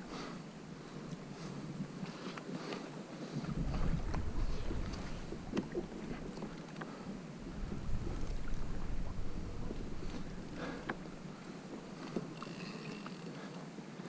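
Wind buffeting the camera microphone in two gusts of low rumble, about three and a half and eight seconds in, over water lapping at a plastic kayak, with scattered small clicks and knocks.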